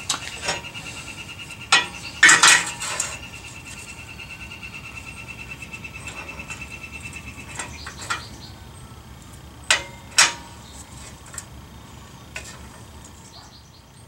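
Steel tension-control-rod mount plate and its bolt and bushing being handled and set against a steel lower control arm during a test fit: scattered metal clinks and scrapes, the loudest about two seconds in and twice near ten seconds.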